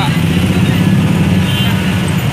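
Dense street traffic, mostly motorcycles with a bus among them, passing close by with a steady loud low rumble of engines.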